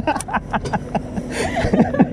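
A person laughing in short chuckles, with voices around.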